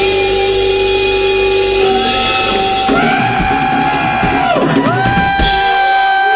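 Live rock band playing, amplified guitars and drums, with long held notes that dip in pitch at their ends; the low end thins out about halfway through.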